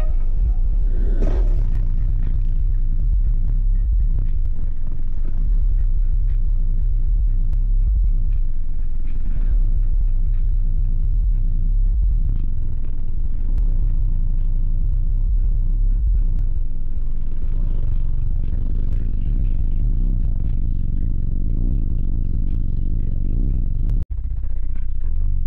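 Subwoofers of a high-powered car audio system playing bass-heavy music very loud, the deep bass far louder than anything above it.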